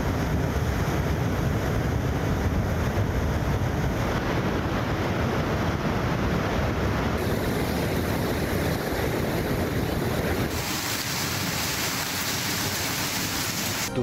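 Rushing muddy floodwater, a steady loud noise of water pouring and churning, with wind buffeting the microphone. The sound changes abruptly about seven seconds in and again about three seconds later, turning thinner and hissier.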